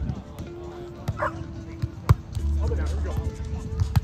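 Volleyball being played by hand: a sharp slap of a forearm pass on the ball about two seconds in and another hit just before the end. Music plays in the background, and a dog barks once about a second in.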